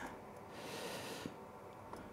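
Quiet bench handling: a soft exhale through the nose, then two faint small clicks as a rectifier tube is pushed into its socket near the end.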